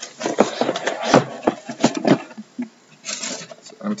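Sealed cardboard hobby boxes of trading cards sliding out of an upturned shipping case and knocking onto the table and against each other: a quick run of knocks over the first two seconds, then a brief scrape of cardboard on cardboard.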